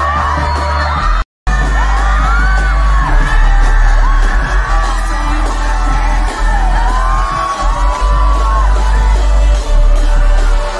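Live hip-hop concert heard from the crowd: loud amplified music with heavy bass, and voices yelling and singing over it. The audio drops out completely for a split second a little over a second in.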